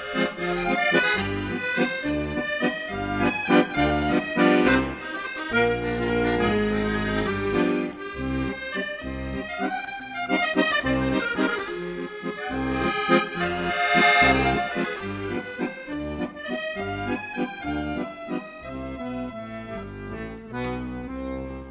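Accordion playing a traditional folk tune, quick melody notes over a regular beat in the bass.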